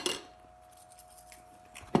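Table knife scraping faintly as it spreads jam on a baked roll, with a few small ticks, then a sharp clink near the end as the knife is set down on a ceramic plate. A faint steady hum runs underneath.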